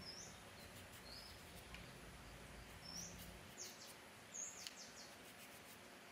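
Near silence, with a few faint, short high-pitched chirps and light clicks scattered through it.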